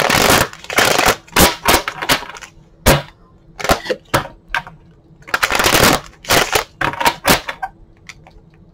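A deck of tarot cards being shuffled by hand. There are two longer riffling runs as the halves are bent and let fall together, one at the start and one a little past halfway, with sharp clacks and slaps of the cards knocked together in between.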